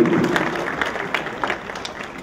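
Theatre audience applauding, the clapping thinning out and growing quieter over the two seconds.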